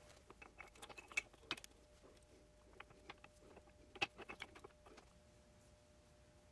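Faint light clicks and clinks of steel spider gears being fitted by hand into a Dana 44 differential carrier, in scattered clusters about a second in and again around four seconds, over a faint steady hum.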